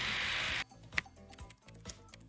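A steady rushing noise cuts off about half a second in. Then a live-casino money wheel's pointer ticks against the pegs as the wheel spins, a few separate clicks a second, over faint game music.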